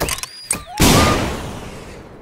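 Cartoon sound effects: a quick rattle of clicks and whistling pitch slides, then a sudden loud blast just under a second in that dies away over about a second, a cartoon bomb explosion.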